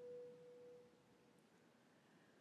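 A faint, pure flute tone dying away in about a second, then near silence.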